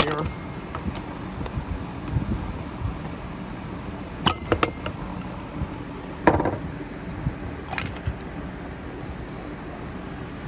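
Flathead screwdriver prying the plastic float bowl off a Briggs & Stratton all-plastic lawn mower carburetor over a metal parts tray. Quiet working noise, then a few sharp clicks and clinks a little past halfway as the bowl separates.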